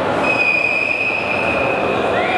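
Arena crowd noise with a long, shrill whistle held on one steady pitch from just after the start, then a second whistle that slides up into the same pitch near the end.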